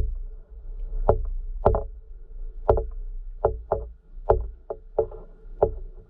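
Sharp underwater clicks and knocks, about ten in six seconds at an uneven pace, each followed by a brief hollow ringing, over a low steady hum, picked up by a camera submerged among feeding fish.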